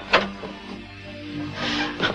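Soft dramatic background music with long held notes, broken by a short sharp knock just after the start and a brief rustling hiss near the end.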